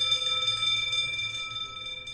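Electric school bell ringing continuously, its striker hammering the gong in a rapid trill, slowly fading.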